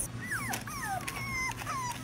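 Young puppies, about five weeks old, whimpering: a run of short, high whines that slide down in pitch, one held a little longer about a second in.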